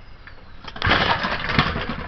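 Puch Pinto moped's small two-stroke engine being pedal-started: it catches about a second in and runs loudly for about a second before dropping back.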